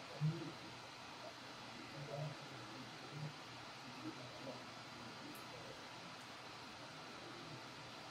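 Quiet hiss, with a few faint, brief low sounds in the first few seconds.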